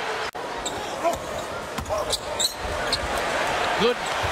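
A basketball being dribbled on a hardwood court under the steady noise of an arena crowd.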